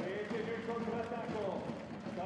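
Crowd noise in an indoor sports hall: indistinct voices and a low, steady background murmur, with no single loud event.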